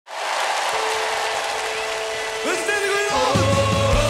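A live crowd applauding and cheering over a held keyboard note. About three seconds in, the band starts the song with a bass line and a steady kick-drum beat.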